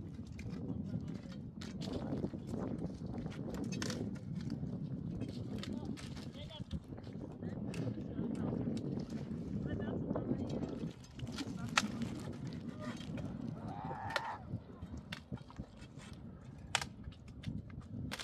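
Footsteps crunching on dry, stony ground with the rustle and snap of brushwood, as sharp clicks over a steady low rumble. Indistinct voices sit underneath, and a brief voice-like call comes about fourteen seconds in.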